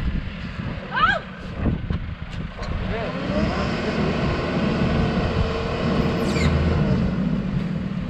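Wheel loader's diesel engine revving up and holding at higher revs under hydraulic load while its boom and silage grab move, from about two and a half seconds in until near the end.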